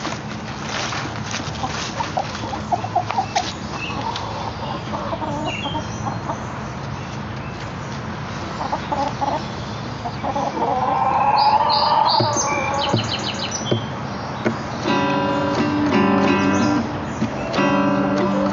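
Hens clucking and calling, with a louder run of squawks past the middle. Near the end an acoustic guitar starts strumming chords.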